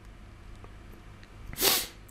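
One short, sharp breath noise from a person close to the microphone about one and a half seconds in, over a faint low steady hum.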